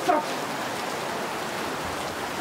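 Heavy rain pouring down in a steady hiss, with a brief voice at the very start.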